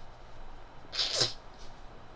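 A person's single short, sharp burst of breath about a second in, sneeze-like.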